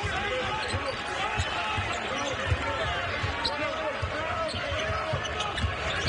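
Basketball dribbled on a hardwood court, with repeated thuds of the ball, sneakers squeaking and a steady arena crowd murmur.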